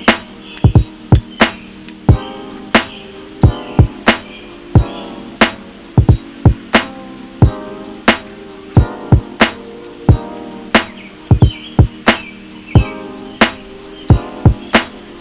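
Background music: a melodic track over a steady beat of sharp percussive hits.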